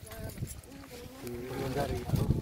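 Quiet voices speaking, with no clear words.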